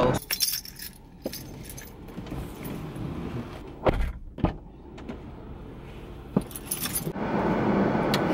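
Someone moving about in a parked car: scattered clicks and rattles over a low steady rumble, with two heavy thumps about four seconds in and a few more knocks near the end.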